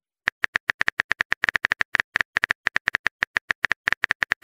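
Phone keyboard typing sound effect: a rapid, even run of key clicks, about ten a second, starting a moment in.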